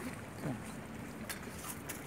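Faint steady background noise with a brief faint voice about half a second in and a few faint clicks.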